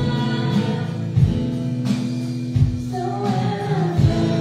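Live church worship band playing a song with voices singing along: acoustic guitar and held chords over a low drum beat that falls about every one and a half seconds.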